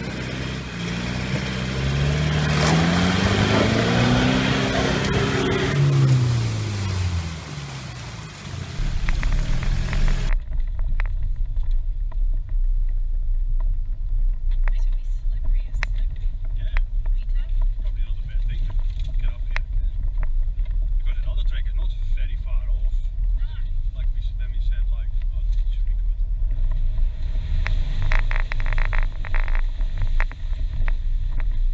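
A 4WD engine revving up and then easing back down over several seconds, during what looks like a strap recovery in mud. About ten seconds in it gives way to the steady low rumble of a 4WD driving a rough dirt track, heard from the cab, with scattered knocks and rattles from the vehicle and stones.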